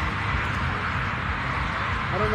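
Steady outdoor background noise, a low rumble with no single clear source standing out.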